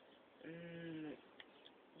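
A boy's voice holding a wordless hesitation sound, a single steady vowel at one pitch for under a second, about half a second in. A faint click follows.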